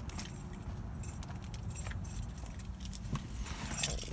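Keys jangling, with light clicking and rattling handling noise as someone climbs into the driver's seat of the truck, the rattle thickening near the end. A steady low hum runs underneath.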